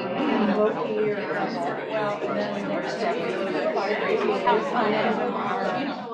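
Indistinct chatter: several people talking at once, none of it clear enough to make out.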